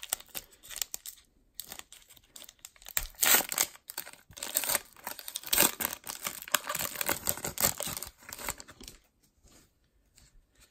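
Irregular rustling and crinkling from a freshly opened pack of Donruss Optic baseball cards being handled, the glossy cards sliding against one another in the hands. The rustles are loudest through the middle and thin out near the end.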